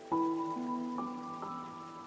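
Slow, soft piano music: a chord struck near the start, then single notes added about every half second and left to ring. Beneath it is the faint, steady rush of a stream's running water.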